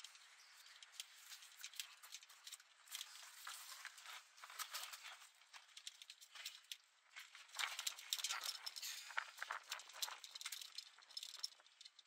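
Faint, irregular rustling and clicking of a cardboard box and its packaging being handled as a battery is lifted out, busiest in the second half.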